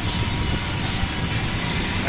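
Steady low rumble of street traffic.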